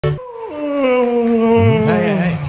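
A man's long, drawn-out yawn: one held vocal note that slowly falls in pitch.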